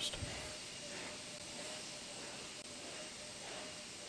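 Steady faint hiss of background noise, with a faint steady tone running under it.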